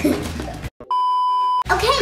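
A steady electronic test-tone beep, the kind played over TV colour bars, used as a glitch transition effect. It starts after a brief dropout about a second in and lasts just under a second before cutting off.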